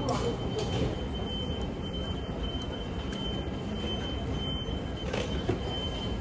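Steady background din of a large indoor hall with a thin, constant high whine running through it, and a couple of soft clinks of metal chopsticks and spoon against a bowl, at the start and about five seconds in.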